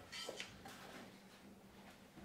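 Near silence: room tone with a faint steady hum, and a brief faint rustle near the start.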